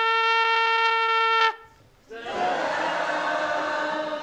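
Trumpet played solo: one steady held note for about two seconds, cut off, then after a short breath a second, rougher and breathier note.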